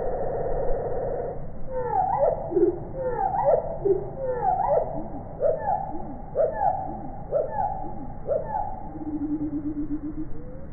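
Song sparrow singing, sounding low and drawn out. A low buzzing note stops about a second in, then comes a run of swooping, sliding notes about twice a second, and a short low buzzing note near the end.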